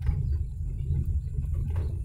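Car moving slowly along a dirt track, heard from inside the cabin: a steady low rumble of engine and tyres.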